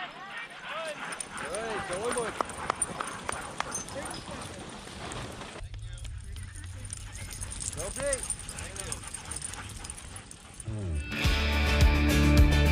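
Short calls and yips from spectators and sled dogs as a sled dog team runs past on the snow trail, over a patter of light ticks. Music starts about a second before the end.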